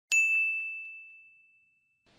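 A single bright, bell-like ding, a chime sound effect struck once and ringing out as it fades over more than a second and a half, with two faint echoes just after the strike.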